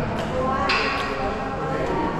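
Indistinct talking that echoes in a tiled underground passage, with a few faint footstep clicks.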